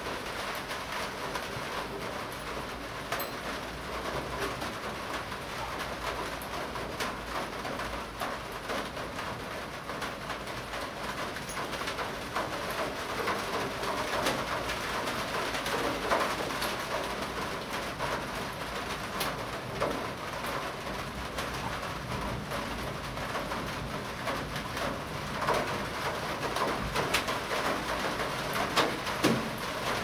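Birds calling in the background, with scattered small clicks.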